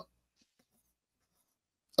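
Near silence: a pause in the speech, with only a few very faint specks of sound.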